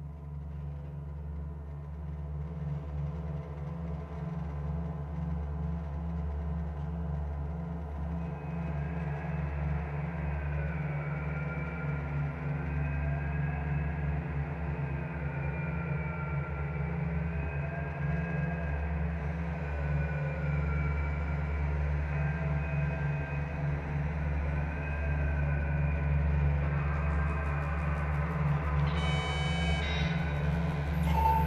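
Ambient electronic music opening on synthesizers: a low, steady drone slowly swells in loudness. From about eight seconds in, higher wavering tones glide up and down over it, and bright high tones come in near the end.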